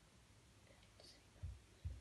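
Faint marker-pen strokes on a writing board, with a brief soft scratch about halfway and two soft low thumps in the last half second, against near-silent room tone.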